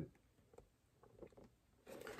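Near silence: room tone, with a few faint ticks about a second in.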